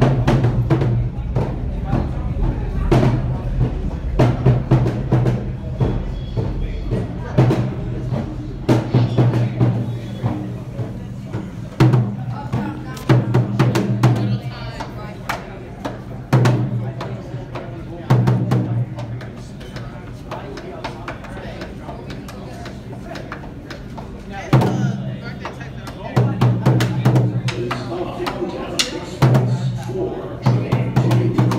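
A street drummer playing a rhythmic pattern on a tall wooden drum, sharp stick strikes over a deep resonant low tone, in a tiled subway station. The playing thins out and gets quieter for a few seconds in the middle.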